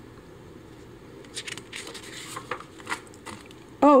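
A page of a picture book being turned by hand: several short paper rustles and flicks, starting about a second in.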